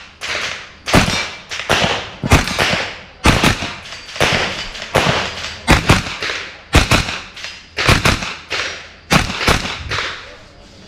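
A string of gunshots from a carbine, about one a second with some fired as quick pairs, each crack followed by a short echo.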